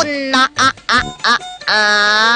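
Cartoon-style duck-quack sound effect over background music: a quick run of short quacks, then one longer drawn-out tone near the end.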